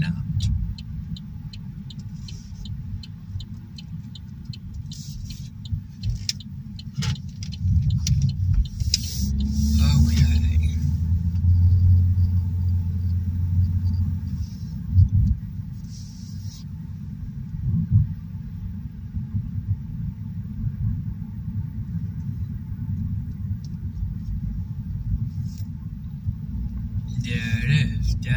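Road and engine noise of a car driving, heard from inside the cabin: a steady low rumble that swells louder for several seconds in the middle. A few sharp clicks come in the first several seconds.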